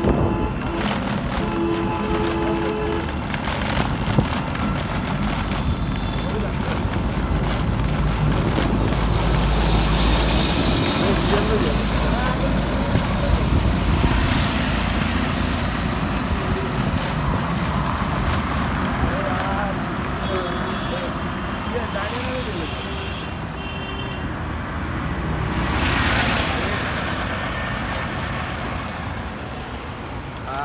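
Road traffic: a bus and a three-wheeled auto-rickshaw approaching and passing, with a low engine rumble that is strongest in the first half. Short horn toots sound near the start and again about two-thirds of the way through, and another vehicle swells past near the end.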